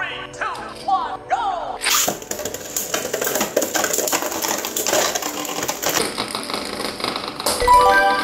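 Two Beyblade Burst spinning tops launched into a clear plastic stadium about two seconds in. They whirr and clatter as they collide, a dense run of fast clicks. Edited-in music and sound effects play over it, with a chime-like tone near the end.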